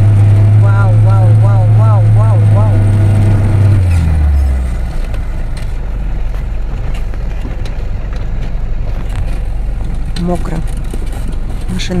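Lada Niva engine labouring up a muddy slope: a loud steady drone that drops in pitch and level about four seconds in, then runs on as a lower rumble as the car fails to take the climb.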